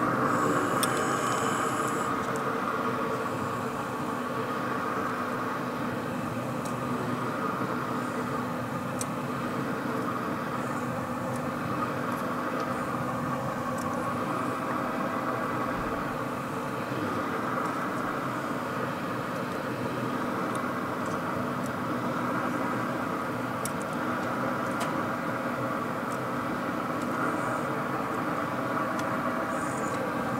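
Pellet grill's fan running with a steady hum while the lid is open and the grill is at cooking temperature, with a few light clicks of metal tongs against the grill grate.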